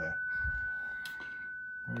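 Icom IC-705 transceiver's monitor playing the steady single tone of an FLDigi tune carrier while the radio transmits with PTT engaged. A low thump comes about half a second in.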